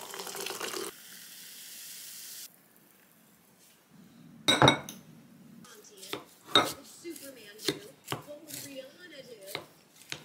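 Welch's grape soda poured into a ceramic cup, the pour rising in pitch, then fizzing for about a second and a half. A loud knock follows, then a wooden spoon mixing bibimbap in a ceramic bowl, with irregular clicks and scrapes against the bowl.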